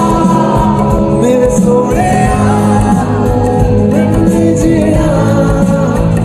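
Live band music with a male lead vocalist singing a melody into a microphone, over drums and accompaniment through a loud PA, recorded on a phone from among the audience.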